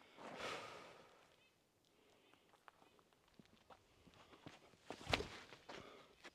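Faint footsteps on a dirt trail as a disc golfer steps into a forehand throw, then a single sharp thump about five seconds in as the plant and release come.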